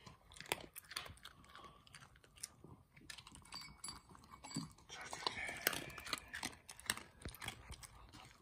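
A small dog crunching dry kibble from a ceramic bowl: a run of quick, irregular crunches and clicks, busiest about five seconds in.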